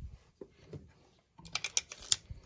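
A lens-mount adapter ring clicking against a Canon EOS camera's lens mount as it is fitted on: a couple of faint clicks, then a quick run of sharp clicks near the end.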